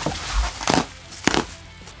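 Bubble wrap rustling and crinkling as it is pulled off a pedalboard flight case, with a low thump and a couple of sharp crackles.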